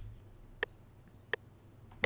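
FL Studio's metronome ticking twice, evenly about 0.7 s apart (about 85 beats a minute). It is the count-in before a MIDI keyboard part is recorded.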